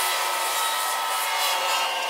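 Fuel dispenser at a petrol pump running while delivering fuel: a steady whir with faint thin whining tones.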